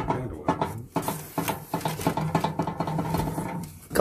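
Objects being handled and shifted about, with irregular small knocks, clinks and rustles.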